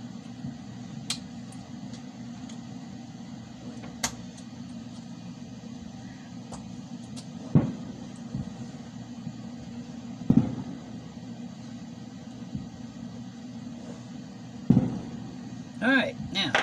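Handling and prying apart a scooter battery pack of LG MH1 18650 lithium-ion cells in plastic cell holders with a small tool: a couple of sharp clicks, then three louder, duller knocks spaced a few seconds apart, over a steady low hum.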